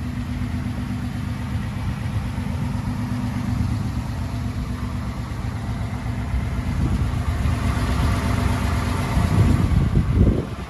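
A 2017 Ford F-150's 5.0-litre V8 idling steadily, with a louder rushing noise building over the last few seconds.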